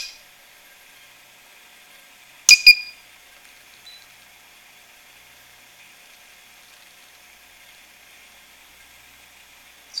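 A pure sine wave power inverter being powered up, its buzzer giving a short pair of high beeps about two and a half seconds in. Otherwise only a faint steady hiss.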